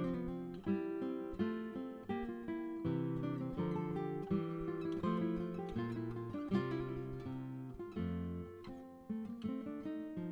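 Background music: an acoustic guitar playing a steady run of plucked notes.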